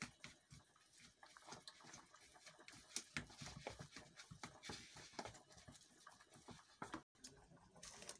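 Faint, irregular squishing and scraping of a wooden spoon mixing minced beef with chopped onions and herbs in a plastic tub.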